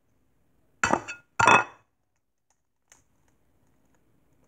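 An egg knocked twice against the rim of a glass bowl to crack it: two sharp clinks about half a second apart, then a faint tick.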